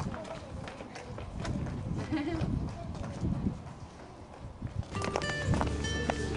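Footsteps on a paved lane, irregular short steps, with faint voices in the background; music comes in near the end.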